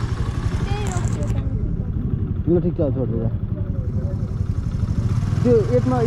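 Small scooter engine running at low riding speed, a steady low pulsing drone, with wind on the microphone.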